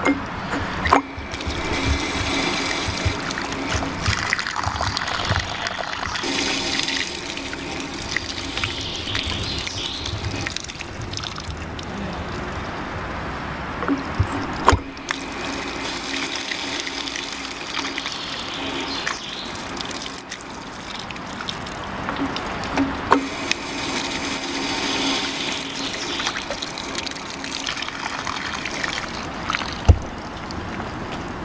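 Water running from a cast-iron public tap and splashing onto a metal drain grate, a push-button tap that gives a few litres per press. The flow breaks off briefly a few times.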